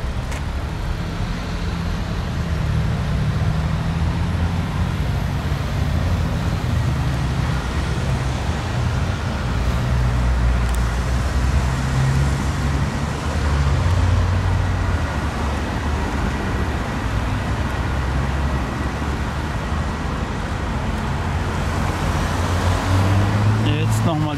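Steady low rumble of road traffic, its level rising and falling slightly as vehicles pass.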